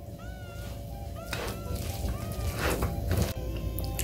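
Playful background music with short sliding notes over steady held tones. A few soft knocks come as cooked rice is scooped with a paddle into a plastic bowl.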